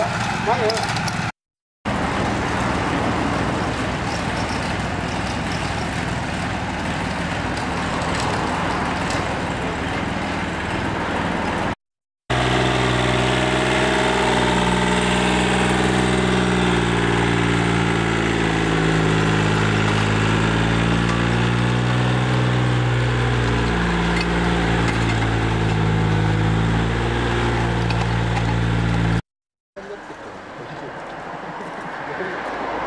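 Small walk-behind rotary tiller's engine running as it churns loose soil. After a brief dropout about 12 seconds in, a compact tractor with a rear rotary tiller runs steadily, its sound holding several low tones that shift in pitch.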